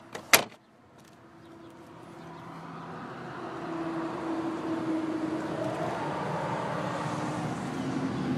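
A sharp click a moment in, likely the glove box lid latching shut, then a vehicle noise with a low hum that builds over about three seconds and holds steady.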